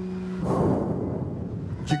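A deep breath blown out slowly through the mouth into a headset microphone, lasting about a second, over a soft, steady held tone of background music.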